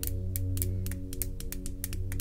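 Soft ambient background music with steady held tones, over an irregular run of quick sharp clicks, several a second.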